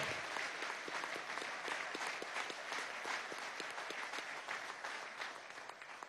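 Audience applauding: many hands clapping together, slowly fading toward the end.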